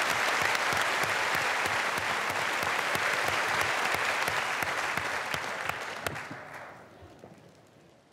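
Theatre audience applauding with dense clapping, which dies away about six seconds in.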